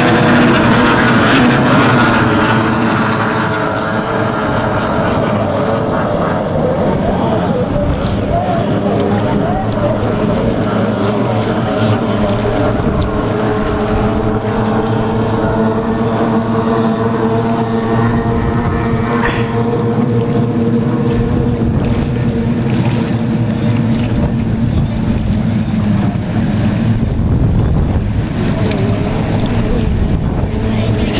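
Racing hydroplanes' two-stroke outboard engines running flat out in a heat, several engines at once making a steady, layered engine note. It is loudest in the first couple of seconds as two boats pass close, then settles to a steady, more distant drone as the pack runs down the course.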